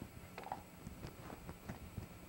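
Faint marker strokes on a whiteboard: a few short scratchy strokes with a brief squeak about half a second in.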